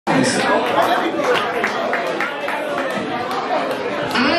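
Voices talking over one another in a large hall: crowd chatter, with no clear words.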